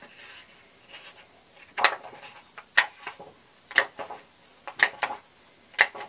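Handheld plastic heart-shaped craft punch punching hearts out of paper: five sharp clicks, about one a second.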